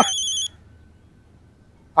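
Mobile phone ringtone: a high electronic beeping that cuts off about half a second in as the call is answered, leaving a quiet pause.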